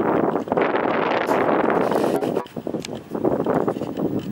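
Wind buffeting the microphone, easing off about two and a half seconds in.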